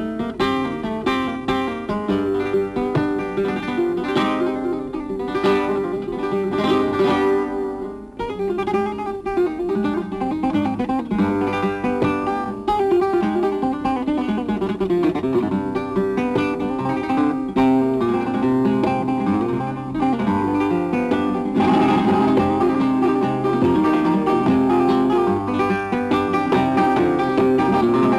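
Solo flamenco guitar playing a soleá: fast picked runs and chords. The playing grows fuller and louder in the last few seconds.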